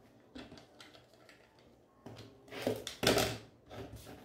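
Fabric being trimmed along an acrylic ruler on a cutting mat: light clicks and rustles of handling, then a few short scraping cuts about two to three and a half seconds in, the loudest just after three seconds.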